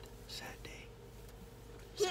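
Faint, whispery voice sounds in the first half-second or so, then quiet room tone with a faint steady hum.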